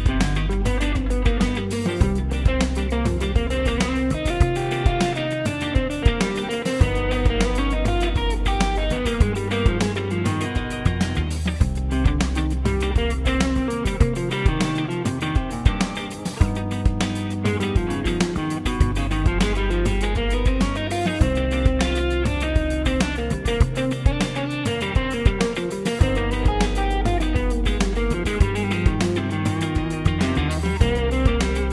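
Electric guitar playing single-note improvised lines over a backing track with bass and drums, moving between C minor pentatonic and the tense G altered scale (A-flat melodic minor) before resolving back to C minor over a G7 to C minor progression.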